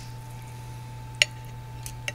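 Cutlery pulling apart tender braised pork in a white ceramic bowl, with one sharp clink of metal on the dish about a second in and a fainter tick near the end, over a steady low hum.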